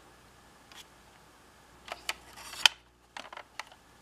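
Small plastic clicks and taps from handling a Schuco Elektro Porsche 917 toy car. A short scrape ends in a sharp snap a little past halfway, as the gull-wing door is shut and latched, followed by a few lighter clicks.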